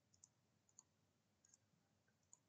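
Near silence with three faint computer mouse clicks as menu options are chosen.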